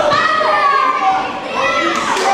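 Children's voices shouting and calling out, high-pitched and drawn out, rising and falling.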